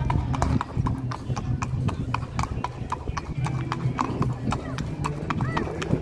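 A grey horse's hooves clip-clopping on asphalt at a walk: a steady run of sharp strikes, several a second.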